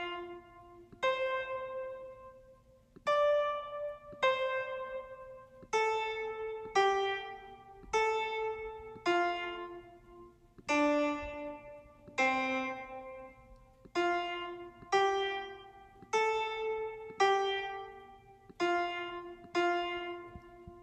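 Piano playback from music notation software, sounding each note of a simple melody one at a time as it is entered into the score: about sixteen single notes at changing pitches, roughly one a second, each dying away before the next.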